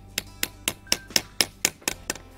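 Hammer tapping a sap spout on a drop line into a drilled tap hole in a frozen silver maple trunk: a quick run of about eight light knocks, about four a second. Each blow is kept light so the frozen tree does not crack.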